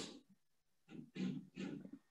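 A man's faint short vocal sounds close to a video-call microphone, three quick murmurs or breaths about a second in, after the tail of a louder breath or word at the very start.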